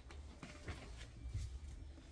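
Faint rustling and a few soft handling noises of a school backpack being moved and set down on a bed, over a low steady hum.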